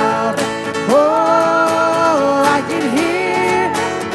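A live worship band playing a song: acoustic guitar, Yamaha keyboard and drum kit with cymbal strokes, and a long held note, likely sung, from about a second in.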